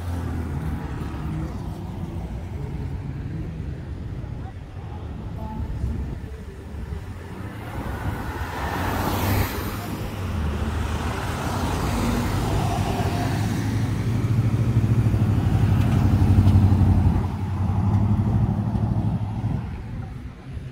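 Cars passing on a town street: steady traffic noise of engines and tyres, swelling as a car goes by about halfway through and growing louder again near the end.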